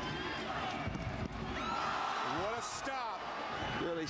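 Stadium crowd noise: a steady hubbub of many voices with individual shouts rising out of it.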